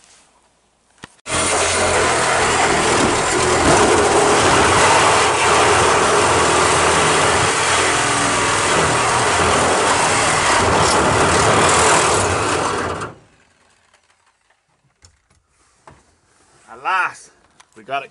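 Reciprocating saw (Sawzall) running for about twelve seconds as it cuts through the sheet-metal body of a Toyota Tercel; it starts about a second in and stops abruptly.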